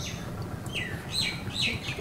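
A bird calling: three short falling notes about half a second apart, starting under a second in, over a low steady background rumble.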